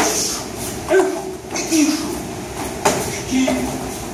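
Three sharp slaps and thuds of karate strikes and body contact between two karateka in cotton gi, about a second or two apart, with short voice sounds in between.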